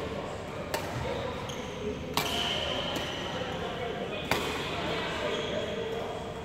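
Badminton rackets striking shuttlecocks in a large echoing sports hall: three sharp hits over about four seconds, over a steady background of voices and court noise.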